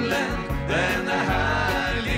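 Live country gospel band playing: male voices singing held, gliding notes over accordion, guitar and a steady bass line.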